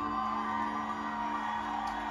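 Live band music with no singing: a held chord sustained steadily, with an electric guitar among the instruments.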